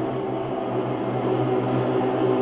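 Amplified cello playing a sustained, layered drone of held overlapping tones. A strong low note sets in at the start and swells gently under the higher tones.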